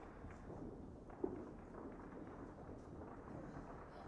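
Distant fireworks, heard faintly as scattered pops over a low background rumble, with one sharper bang a little over a second in.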